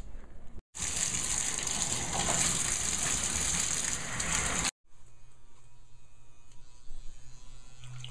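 Bathtub faucet running, a loud steady gush of water into the tub from about a second in, which stops abruptly near five seconds; after that only quieter sounds with a low hum.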